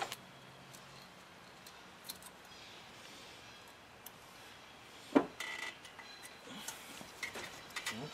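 Light metallic clicks and ticks of steel exhaust springs being hooked onto the tabs of a slip-on muffler, scattered and irregular, coming closer together in the last few seconds.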